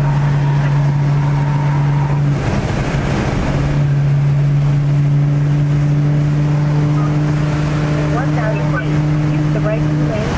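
Steady low drone of a car driving at highway speed, heard from inside the cabin: the engine and road hum holds one pitch, briefly broken and noisier a little after two seconds in. Faint voices come in near the end.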